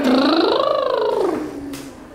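A child's voice imitating a motorbike engine with a rattly, rolled "brrrm", rising and then falling in pitch over about a second and a half before fading.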